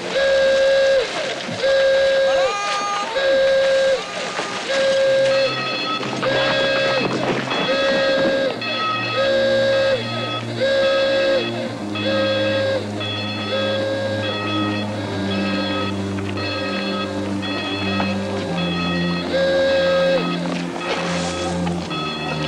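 Camp alarm sounding in repeated blasts of one steady buzzing tone, about once a second, over low sustained dramatic music.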